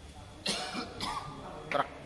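A man coughs with a short, harsh burst about half a second in, and makes a second short sharp sound near the end.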